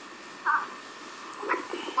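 Quiet room sound with one short voice sound about half a second in, and speech starting near the end.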